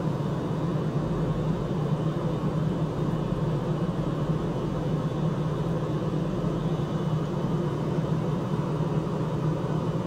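A steady low hum and rumble that holds level throughout, with no distinct events.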